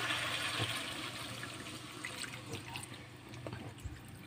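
Coconut milk poured in a thin stream into a hot wok of simmering baby octopus adobo, with a hiss from the pan that fades gradually and a few faint pops.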